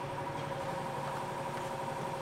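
Steady background hum of running machinery, with a few constant tones and no change in pitch or level.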